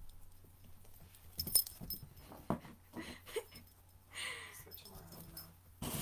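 A puppy moving about and sniffing out a hidden treat in a find-the-treat game, with scattered light clicks and knocks and a short breathy snuffle about four seconds in.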